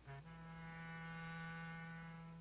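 Closing music sting: a brief note, then one long held low note that slowly fades.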